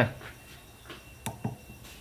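A few faint clicks, starting about a second in, as the frequency button on a handheld wireless microphone is pressed to step through its channels.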